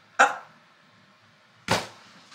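Two short, sharp sounds about a second and a half apart, the second one deeper, from hands working a rubber band into the hair.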